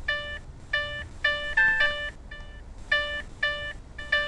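Short synthesized electronic notes played in an uneven sequence, about seven in four seconds, mostly on the same pitch, with a brief cluster of higher notes near the middle, like a simple ringtone melody. The notes are generated by interactive sound software that responds to movement in the camera picture.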